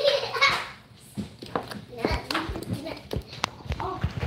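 Wooden spoon beating thick batter in a stainless steel mixing bowl, giving a series of irregular soft knocks and clacks against the bowl, with brief voice sounds alongside.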